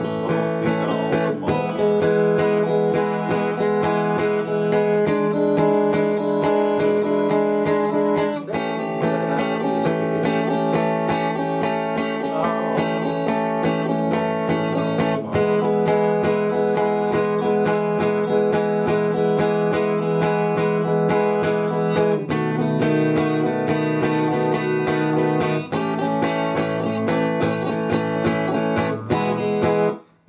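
Electric guitar strummed through a standard I–IV–V blues progression in E, built on E, A7 and B7 chords. Each chord rings for several seconds before the next change.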